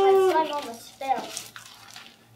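A person's drawn-out vocal sound without words, held on one pitch and sliding down as it fades about half a second in. A short falling vocal glide follows about a second in.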